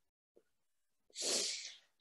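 A man's audible breath in through the mouth, about a second in and lasting around half a second, just before he starts speaking again; otherwise the line is silent.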